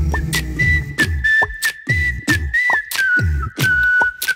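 Instrumental passage of a Malayalam song: a high, thin whistle-like melody held over deep bass notes and a steady drum beat.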